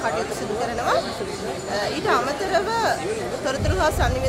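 People talking in a busy hall: speech over background chatter, with a low rumble coming in near the end.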